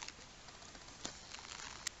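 Quiet background noise with two faint clicks, one about a second in and one near the end.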